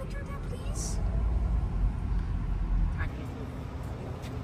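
Low rumble of a car driving slowly, heard from inside the cabin, which stops abruptly about three seconds in.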